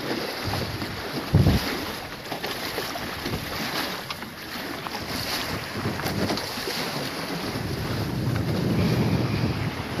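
Wind buffeting the phone's microphone over water rushing past the hulls of a Nacra 20 beach catamaran under sail, with a short louder bump about a second and a half in.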